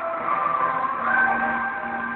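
Music from a live stage act: held notes that step up in pitch about a second in.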